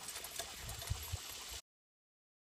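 Dog-drawn suspension sulky rolling over a dirt road: a low rattle of the cart with scattered clicks and a couple of dull knocks, cutting off suddenly about one and a half seconds in.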